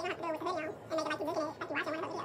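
A high-pitched voice in several short phrases, its pitch wavering up and down in a warbling way.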